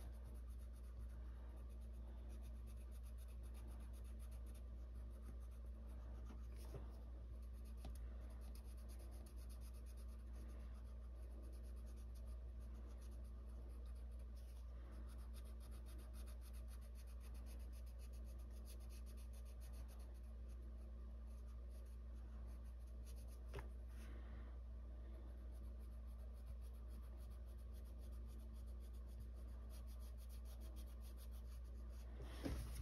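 Arteza colored pencil scratching across coloring-book paper in faint, quick back-and-forth strokes, over a steady low hum. A brief light knock comes about seven seconds in and another past twenty-three seconds.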